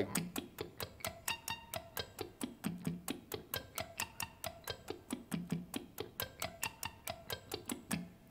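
Ibanez electric guitar played in slow sweep-picked arpeggios, about five evenly spaced notes a second, running up and down across the strings. Each string is picked distinctly with a crisp, clicky attack, so every note is heard separately.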